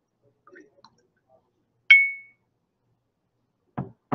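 A single sharp glass clink, about halfway through, with a brief high ringing tone: glass tapping against a glass beaker as liquid is poured into it. A few faint small sounds come before it.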